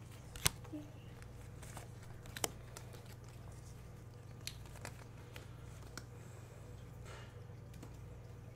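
Uno cards being handled and laid down on a wooden floor: a sharp tap about half a second in, another about two and a half seconds in, then a few fainter clicks, over a low steady hum.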